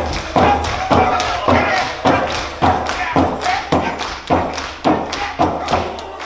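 A large hand-held frame drum struck with a beater in a steady beat, about two strikes a second, each a deep thud, with voices calling between the strikes.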